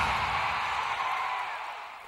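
Tail of a TV sports programme's intro jingle fading away: a hissing wash of sound with no clear notes that dies out steadily over two seconds.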